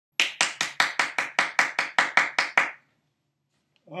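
Hand clapping: about a dozen even claps, about five a second, stopping abruptly under three seconds in.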